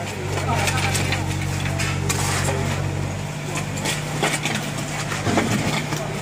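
Shovels scraping and knocking in wet mud and stones, giving scattered sharp knocks, over a steady low engine hum.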